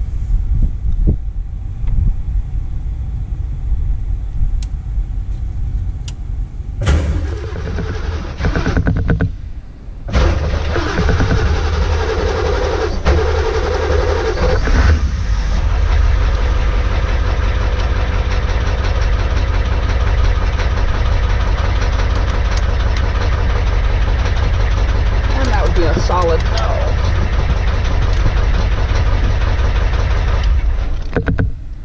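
Ford 7.3 litre IDI V8 diesel engine running, heard from inside the truck's cab. It gets fuller and louder about seven seconds in, drops briefly near ten seconds, then settles into steady running.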